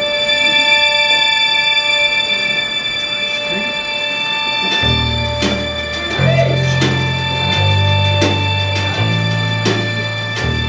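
Live band playing a song's instrumental introduction: a sustained, held chord for about five seconds, then bass notes and a steady pulse of sharp hits join about five seconds in, roughly one every 0.7 seconds.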